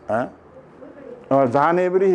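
A short falling pitched sound near the start, then, from a little past halfway, a man's voice holding a long, wavering tone.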